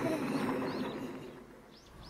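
A fading wash of noise, then three short, quick bird chirps near the end.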